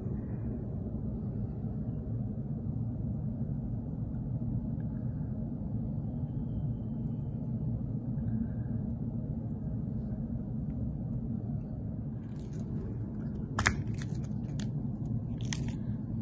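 A steady low background rumble, with a few sharp clicks and taps in the last few seconds as small fishing tackle is handled: a hook, rubber bead stops and a small plastic tackle box.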